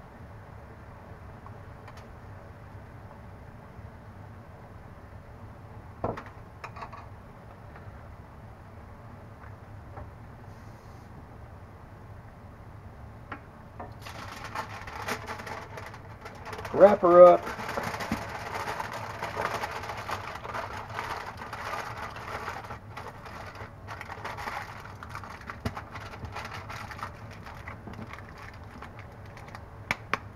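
Aluminium foil crinkling and crackling as it is folded and crimped around a fish fillet, starting about halfway through. Before that only a low room hiss with a single tap, and a brief voice-like sound is the loudest moment a few seconds into the crinkling.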